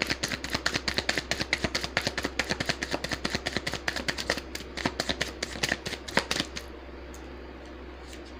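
Tarot cards being shuffled by hand: a quick run of light card slaps, several a second, that stops about six and a half seconds in.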